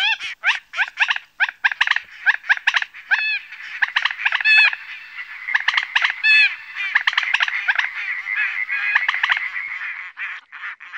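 Birds calling: a rapid, overlapping run of short, nasal, arched calls, several a second, the calls crowding into a denser, steadier mix in the second half.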